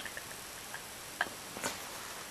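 Quiet room hiss with two faint short clicks, one just after a second in and another about half a second later.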